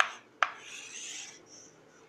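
Chalk on a blackboard: a sharp tap as the chalk meets the board, then a rasping scrape of about a second as a line is drawn, and a shorter second stroke.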